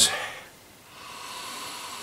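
A long, steady sniff through the nose into a glass of stout as the beer is nosed for its aroma, starting about a second in.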